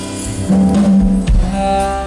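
Live jazz band with saxophones playing a slow ballad: held notes over bass and drums, with a couple of low drum thumps about a second in and new melody notes entering in the second half.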